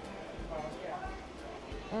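Background chatter of other people talking at a distance in a busy dining area, with a few soft low thuds.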